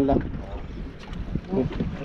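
Wind buffeting the microphone on a small boat at sea: a low, uneven rumble with a couple of faint knocks, after a man's voice breaks off at the start.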